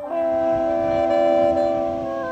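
Music: a loud chord of several steady notes held for about two seconds, from a reed or keyboard instrument, moving to a new chord at the end.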